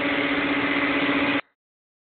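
Steady, loud hum of the outdoor cell-site equipment cabinets' cooling fans and air conditioner, with a constant low tone, cutting off abruptly to dead silence about two-thirds of the way through.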